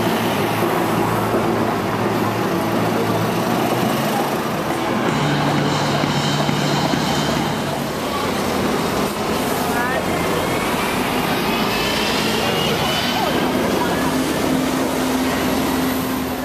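Interior of a moving double-decker bus: steady engine and road noise, with a rising whine about eleven seconds in as the bus picks up speed. Indistinct voices mix in.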